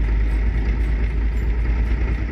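Large farm tractor's engine running steadily as it drives along a road, heard from the hood as a strong, steady low rumble.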